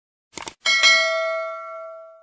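A quick double mouse-click, then a bright notification-bell ding with several ringing tones that fades away over about a second and a half.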